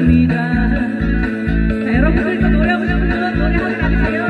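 A woman singing through a PA system over an amplified backing track with a steady bass beat, about three beats a second; her voice comes in about halfway through.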